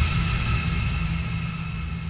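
A low rumbling drone, the tail of an intro sting, fading slowly, with a faint high tone held above it.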